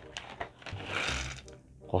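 Puffed corn snacks being tipped out of a crinkly foil snack bag into a bowl, with scattered rustling and light clicks, growing quieter near the end.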